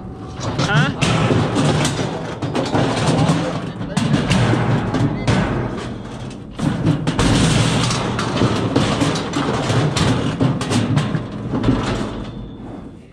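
Steel livestock squeeze chute banging and rattling again and again as a bison shifts and pushes inside it, heavy booming knocks over a continuous low rumble.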